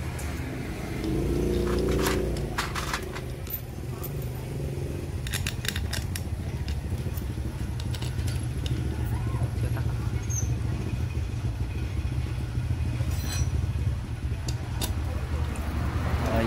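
Steady rumble of road traffic with motorbikes in it, louder for a moment about a second in. Light metallic clicks of valve-cover bolts being fitted by hand sound over it now and then.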